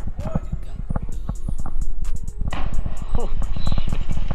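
Water lapping and knocking against a camera held at the waterline, then a splash of someone landing in the river about two and a half seconds in, followed by a rush of water noise.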